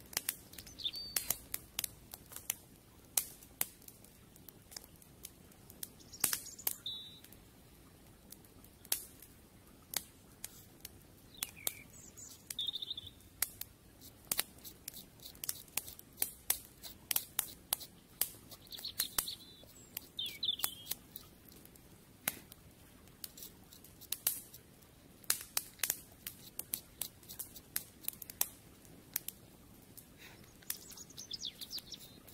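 Small kindling fire in a stone fire ring crackling with sharp, irregular snaps throughout. A bird chirps briefly now and then above the crackle.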